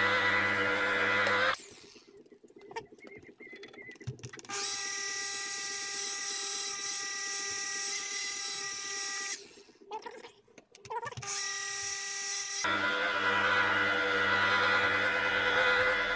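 Electric rotary car polisher running at low speed, its foam pad buffing polish into the paint of a trunk lid. The steady motor whine stops and starts several times: it cuts out about a second and a half in, runs again from about four and a half to nine seconds, briefly again around eleven seconds, and comes back steadily near thirteen seconds.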